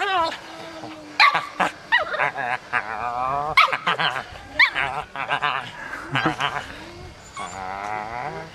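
A small puppy whining and yipping, several short high-pitched cries, while it is held up and mouths at a man's face.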